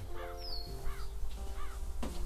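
A crow cawing three times at an even pace, over a short piece of music with held notes that change about every half second.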